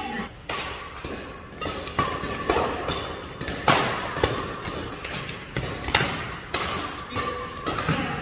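Badminton rackets striking a shuttlecock in a quick doubles rally, sharp hits about every half second with players' footfalls on the court mat, the hits ringing briefly in the large hall.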